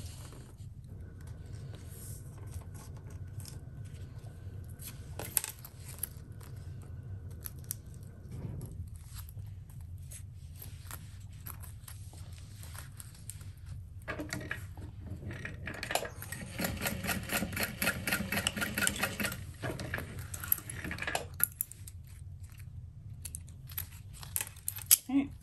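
Juki industrial sewing machine stitching a fabric tab onto the end of a zipper, in a rhythmic run lasting several seconds past the middle. Before it come lighter clicks and handling of the fabric and zipper, and a low hum runs throughout.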